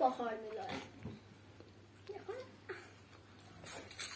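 A child's voice making short wordless sounds: one drawn-out sound in the first second, then a couple of faint short ones, and a brief breathy hiss near the end.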